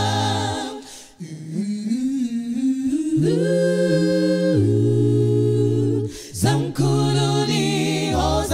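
Mixed male and female a cappella gospel group singing wordlessly, with no instruments: a held chord over a deep bass note breaks off about a second in. Humming phrases then rise into sustained close-harmony chords, with a brief break just past six seconds before the chord returns.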